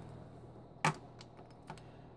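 Cylindrical 18650 lithium-ion cells being handled and set down on a workbench: one sharp click about a second in and a fainter tap near the end, over a low hum.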